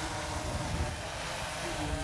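Wind rumbling on the microphone over the steady hum of a DJI Inspire 1 quadcopter's rotors as it hovers.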